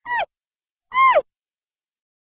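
Two short squeaky calls, each sliding down in pitch; the second, about a second in, is louder and longer.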